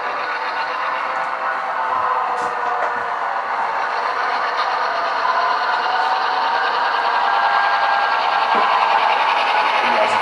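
HO-scale model Santa Fe F-unit diesel locomotive running along the track, a steady hum and rattle of motor and wheels that grows louder as it comes toward the camera.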